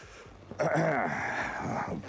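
A man's wheezy breath from the throat, with a low hum falling in pitch, starting about half a second in and lasting just over a second.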